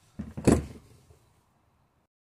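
A brief clatter and rustle about half a second in, from the hand vacuum pump's plastic tubing and kit being handled on the workbench.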